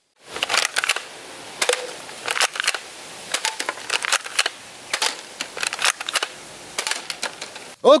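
Irregular plastic clicks and rattles from a toy dart blaster with a revolving drum being handled, over a steady faint hiss.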